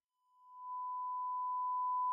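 A steady electronic pure tone, like a test-tone beep, fading in about half a second in and slowly getting louder.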